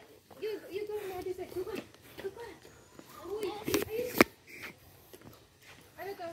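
Voices talking quietly in the background, with a sharp click about four seconds in.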